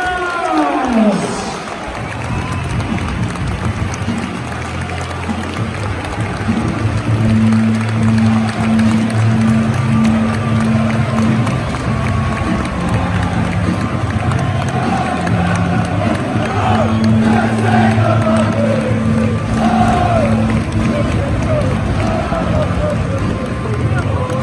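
Football stadium crowd noise with music playing over it, a steady repeating bass line under a dense din of voices; a melody of singing voices rises over it in the second half.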